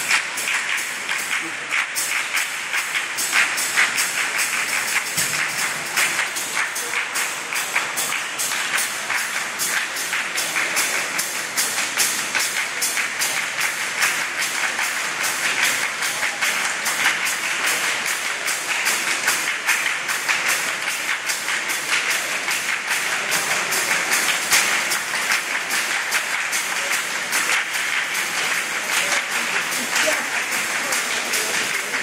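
A choir clapping their hands together in a steady rhythm, sharp claps repeating evenly over a musical background.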